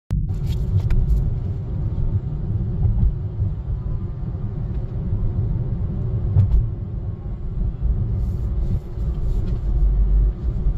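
Steady low rumble of road and engine noise heard from inside a moving car's cabin, with a few faint clicks near the start and again about six seconds in.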